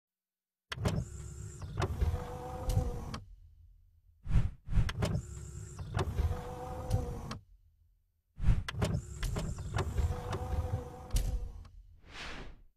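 Motorised mechanical whirring sound effect, played three times in a row. Each run lasts about three seconds and has sharp clicks at its start and within it, over a low rumble.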